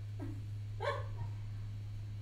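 Steady low electrical hum, with two short, faint pitched sounds, one about a quarter second in and one about a second in.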